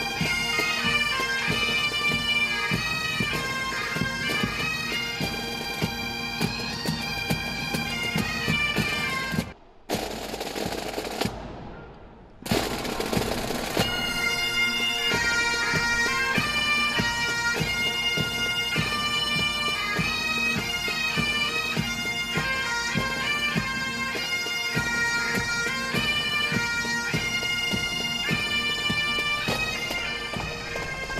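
Scottish bagpipes playing a traditional tune over their steady drones. About ten seconds in, the music briefly drops out behind a short burst of noise, then resumes.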